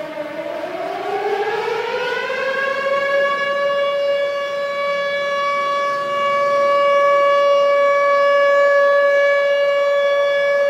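Air-raid siren rising from a low pitch over the first three seconds, then holding a steady note.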